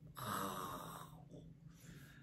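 A man breathing audibly close to the microphone for about a second, fading into faint room tone.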